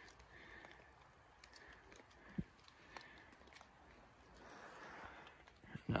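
Faint footsteps through dry fallen leaves, with scattered small clicks and one dull thump a little over two seconds in.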